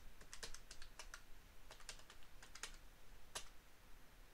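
Keys of a plastic desktop calculator being pressed in an irregular, faint run of clicks as a column of figures is re-added.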